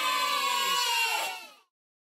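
A high, drawn-out, voice-like cry, slowly falling in pitch, that fades out about one and a half seconds in.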